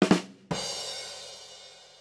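A short musical sting: a sudden drum hit with a cymbal, about half a second in, ringing and fading away over about a second and a half.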